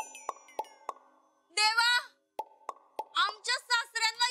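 Sound effects from a TV comedy-drama soundtrack: a run of short hollow plops, about three a second, then a brief high warbling sound, then three more plops. A woman starts speaking near the end.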